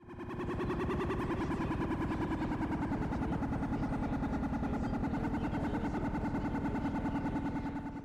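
Brand logo sound sting: a steady buzzing drone at one held pitch, pulsing very rapidly and evenly, starting suddenly and then cutting off abruptly.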